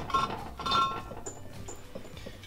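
Steel road wheel clinking and ringing against its metal wheel studs and hub as it is pulled off. There is one short ring at the start and another just under a second in.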